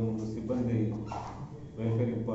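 A man speaking, with a steady low hum underneath.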